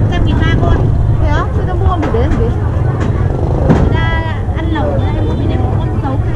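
Two people talking over the price of cheap ducks at a market poultry stall, over a loud steady low rumble of traffic or street noise.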